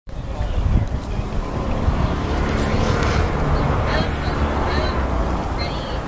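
Outdoor wind buffeting the microphone in an uneven low rumble, with faint, indistinct voices underneath and a few short high chirps in the second half.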